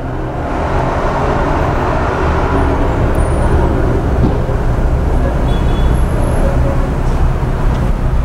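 Steady low rumble of road traffic and idling vehicle engines.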